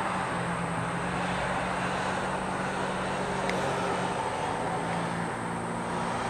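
Steady low hum of a distant engine over an even background hiss.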